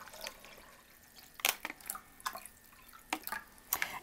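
Apple juice poured from a glass measuring cup into a glass bowl, the trickle tailing off early on, followed by a few light knocks and clinks as the containers are handled.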